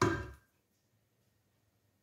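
The dying ring of a clunk from a frying pan being moved on the hob, fading out within about half a second, then near silence.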